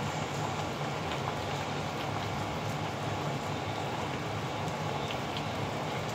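A pot of pork and vegetable soup boiling on an electric stove: a steady bubbling hiss with faint small pops, over a low steady hum.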